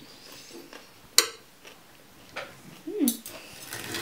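A metal knife and fork clinking against a ceramic plate as a potato fritter is cut: one sharp clink about a second in, then a few softer clinks later on.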